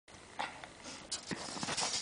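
Snow crunching in a few short scrapes as a kicksled's metal runners are shoved through fresh snow, with footsteps.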